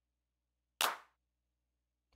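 A drum-machine clap sample ('Attack Clap 05') previewed once in FL Studio's browser: a single short, sharp clap hit just under a second in, dying away quickly.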